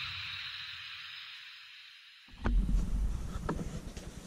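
The hissy tail of an intro music sting fading out over about two seconds, then an abrupt cut to room sound: low rumbling handling noise with two soft knocks about a second apart.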